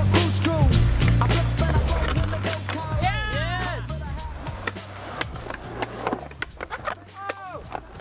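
Background music fading out, giving way to a skateboard on concrete: wheels rolling and a series of sharp clacks and knocks from the board, with a few short voice sounds.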